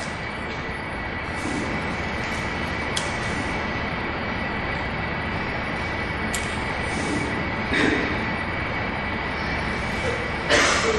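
Steady rushing background noise with a faint constant high tone, and a brief louder sound just before the end.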